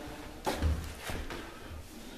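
A sharp click about half a second in, followed by a few dull knocks and bumps in a quiet room.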